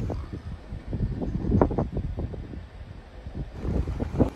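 Wind buffeting the microphone outdoors: a gusty, uneven low rumble.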